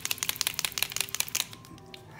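Colored pencil scratching on paper in rapid back-and-forth strokes, stopping about one and a half seconds in.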